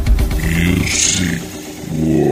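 A DJ transition sound effect between songs in a mix: an engine-like revving sound, with a rising whoosh about a second in and no beat under it.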